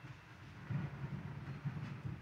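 Congregation sitting down together in the pews, a low, uneven rumble of shuffling and settling that grows about a second in.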